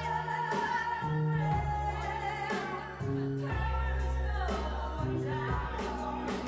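Karaoke: a singer holding long notes into a microphone over a backing track with bass and a steady drum beat, heard through the venue's PA.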